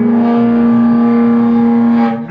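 Live rock band with upright double bass and electric guitar holding one long, steady note at full volume. The note cuts off right at the end.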